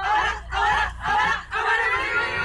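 A group of voices chanting and singing together in unison: four short, loud phrases in two seconds, with a steady low hum underneath.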